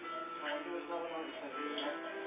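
A television programme playing: background music with a voice under it.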